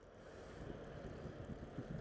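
Steady low rumble of wind on the microphone and tyre noise from a bicycle rolling along a city street, with a faint hiss.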